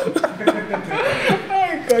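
Men chuckling and laughing in short, broken bursts.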